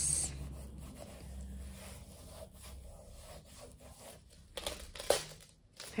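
Hands rubbing and pressing a plastic sheet protector down onto silver leaf: a soft, steady rubbing, with a few louder, sharp plastic crinkles near the end as the sheet is handled.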